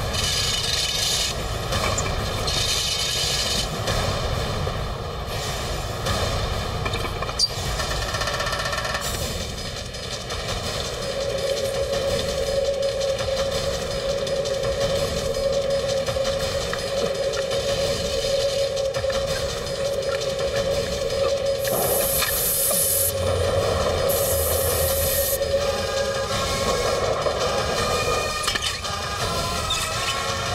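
Action-film soundtrack: dramatic background music with a long held note through the middle, over the rapid rattling noise of a fast-moving train.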